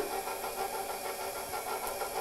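KitchenAid stand mixer's motor running steadily, its flat beater turning through dry flour, salt and sugar.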